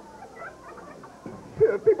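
Audience laughter dying away to a few faint, high-pitched titters. Near the end a man's voice starts speaking into a microphone.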